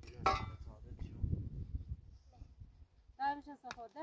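A pickaxe strikes dry, stony earth once, followed by a couple of seconds of scraping and crumbling soil as the hole is dug. A voice speaks briefly near the end.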